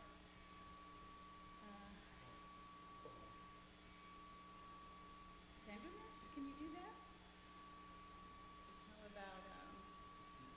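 Near silence: a few faint, indistinct words of off-mic talk, over a faint steady hum.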